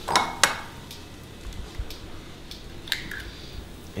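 Light clicks and knocks of ceramic bowls being handled as an egg is cracked into a small bowl. Two sharper knocks come about a third of a second apart right at the start, followed by a few faint taps.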